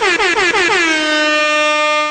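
Loud horn sound effect signalling time's up. It gives a run of about six quick falling swoops, then settles into one long, steady blast.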